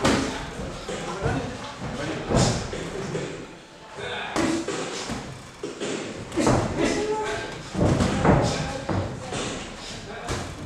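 Gloved punches landing during boxing sparring: several irregular thuds, with voices talking around the ring.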